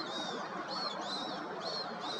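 Birds calling: high, thin, arched calls repeated about twice a second, several overlapping, over a steady background hiss.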